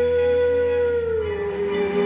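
A string section of violins, violas and cello playing, with one long held note on top that slides down slightly about a second and a half in, over a steady low bass.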